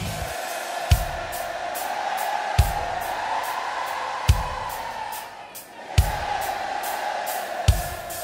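Live heavy-rock band in a sparse passage: single kick-drum hits about every second and a half, with light cymbal ticks between them, over a steady wash of sound that dips briefly past the middle.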